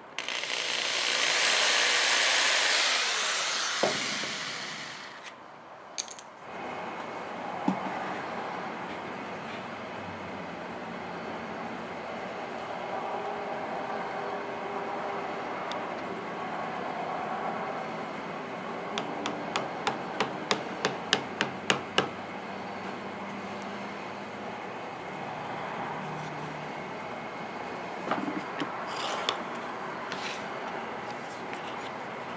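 Cordless drill running for about five seconds, drilling into a thin rosewood headstock veneer, then stopping. Quieter handling of small wooden and inlay pieces follows, with a quick run of about a dozen sharp clicks.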